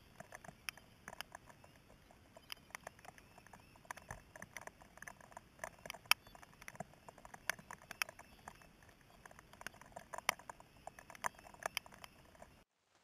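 Scattered light ticks and taps at an uneven pace, several a second, over a faint steady outdoor background.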